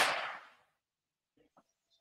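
The dying tail of a single sharp, loud bang from a firework or firecracker, its echo fading away over about half a second.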